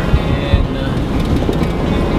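Steady low road and engine rumble inside the cabin of a vehicle driving at speed.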